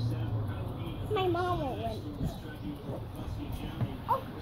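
A small child's high voice making wordless sing-song sounds, gliding up and down for about a second before trailing off into short murmurs. A low steady hum stops about half a second in.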